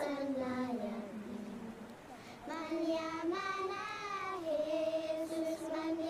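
Traditional Kalinga singing from the Philippines: high voices holding long sung notes. They fade about a second in, and a new phrase starts near the middle.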